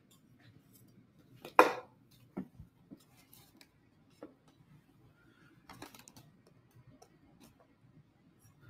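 A few faint, scattered clicks and knocks of kitchen utensils and dishes being handled, over quiet room tone, with a short spoken syllable about one and a half seconds in.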